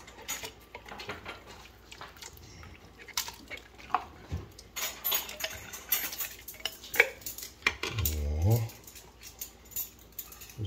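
Irregular clicks, taps and scrapes of a nylon slotted spoon against a glass jar as canned trout is scraped out of it into a pot of soup. Near the end the spoon stirs in the pot.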